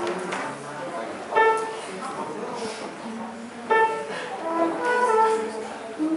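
Men's voices singing a few held notes a cappella, with sharp, loud attacks about a second and a half in and again near four seconds, then several shorter notes at different pitches.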